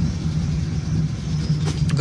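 Manual car's engine running steadily, heard from inside the cabin while driving, as the learner works the clutch and shifts into second gear, with a few faint clicks near the end.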